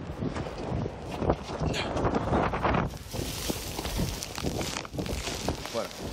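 Glacier avalanche of snow and ice heard through a phone's microphone: a low rumble with wind buffeting the mic. About three seconds in it turns into a loud, even hiss as the powder cloud engulfs the phone.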